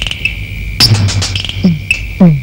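Film background score: a steady high electronic tone with chirping pulses over it, then, near the end, a quick run of electronic drum hits that each drop sharply in pitch.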